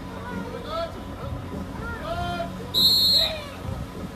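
A single loud, shrill whistle blast lasting about half a second, near the end, over crowd chatter.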